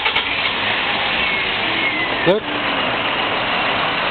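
A small car's engine idling steadily close by, heard as a constant noise.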